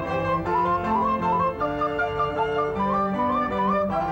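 Instrumental music for the dance: a quick, ornamented melody moving in short turns over held lower notes.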